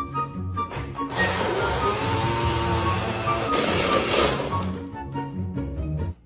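Countertop blender motor running for about three and a half seconds, starting about a second in, as it purées fruit into a smoothie. It plays over background music with a steady beat.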